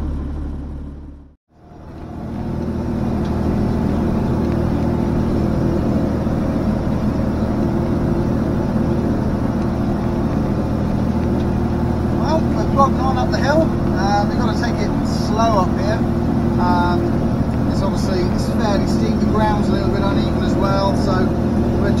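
John Deere tractor engine running steadily under load while pulling a grass mower up a hill, heard from inside the cab. The sound fades almost to nothing about a second and a half in, then comes back.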